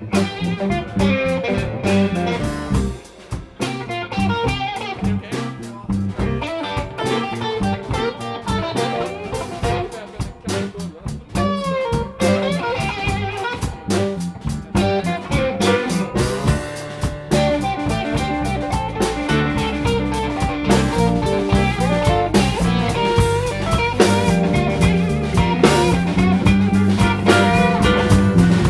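Live electric blues band playing an instrumental break in a slow blues: electric guitar over bass and drums, with harmonica played into the vocal mic. The band grows louder over the last several seconds.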